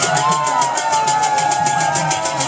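A crowd of men chanting and shouting together, several voices holding long wavering notes, over a fast, even beat of hand percussion at about six strokes a second.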